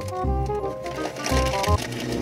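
Background music with steady held notes and a beat.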